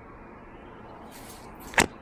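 Quiet room tone, then a single sharp click near the end: handling noise as the recording phone is grabbed.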